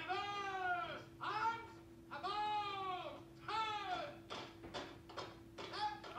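A man's voice shouting four long, drawn-out calls in the first four seconds, each rising and falling in pitch, like parade-ground drill commands, followed by a run of short sharp knocks, over a steady hum.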